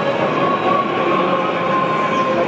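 A steady blend of many indistinct voices echoing in a large stone church, with a few faint held tones above it.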